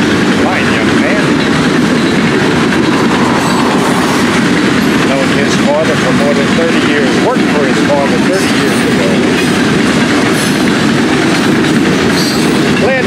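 Freight cars of a long Florida East Coast Railway train rolling past at speed: a steady, loud rumble of steel wheels on the rails.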